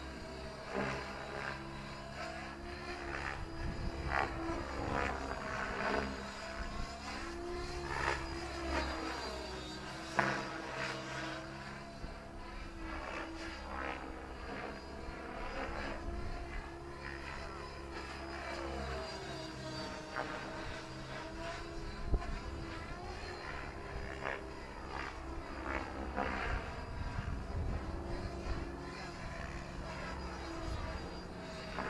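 Electric Align T-Rex 700 Dominator RC helicopter flying piro pogos, its rotor blades and motor whining. The pitch sweeps up and down over and over as the helicopter climbs, drops and pirouettes.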